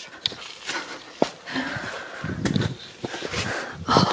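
Footsteps scuffing through soft sand, with breathing close to the microphone.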